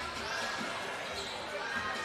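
Steady background noise of an indoor basketball hall during live play, with the ball being dribbled on the court.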